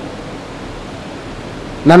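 Steady, even hiss of background noise with nothing else in it. A man's voice comes in just before the end.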